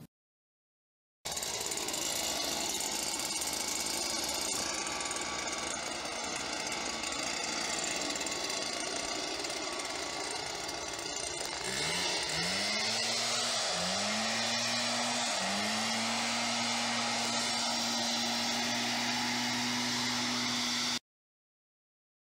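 Petrol backpack leaf blower running with a steady rush of air; about halfway through its engine revs up three times in quick succession, then holds at a high, steady pitch until the sound cuts off near the end.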